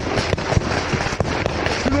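Small-arms gunfire: a rapid, irregular run of sharp shots, several a second, from more than one weapon.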